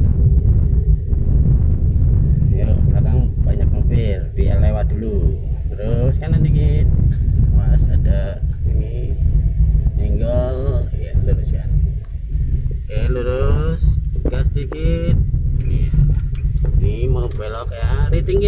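Steady low rumble of a car being driven, heard from inside the cabin, with voices talking on and off over it.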